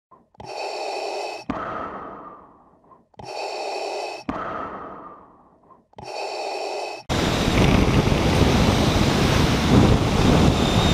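An intro sound effect played three times: each a hiss about a second long that ends in a sharp click and a fading tail. About seven seconds in it cuts to the steady rush of wind and road noise of a motorcycle riding at speed.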